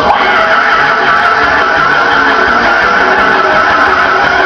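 Loud gospel praise-break music from a church choir and band, with one high note held steady for about four seconds.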